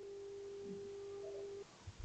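Faint, steady single-pitch hum over low background hiss, cutting off suddenly about one and a half seconds in.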